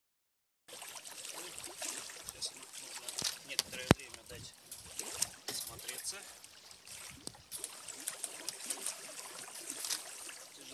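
Small waves lapping at a rocky lakeshore, starting under a second in, with scattered clicks and knocks from plastic pet-carrier crate doors being handled; one sharp click about four seconds in is the loudest.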